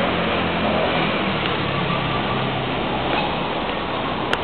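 City street traffic noise: a steady hum of vehicles.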